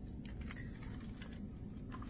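Faint handling sounds of a picture book being opened and held up: a few light clicks and taps from the cover and pages.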